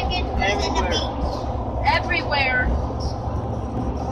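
Steady low road and engine rumble heard from inside a car moving at highway speed. Brief high-pitched voices come twice, near the start and about two seconds in.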